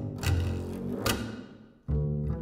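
Solo double bass played pizzicato: low plucked notes with sharp, clicking attacks. They die away almost to nothing near the end, just before the next note is struck.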